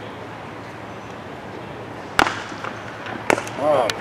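Sharp cracks of a cricket bat striking the ball in the nets, a loud one about two seconds in and another about a second later, followed by a man's exclamation near the end.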